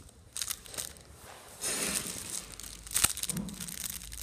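Clear plastic flow-wrap packs of cookies crinkling as they are handled. The crinkling comes in irregular bursts, with a longer stretch about two seconds in and a sharp click about three seconds in.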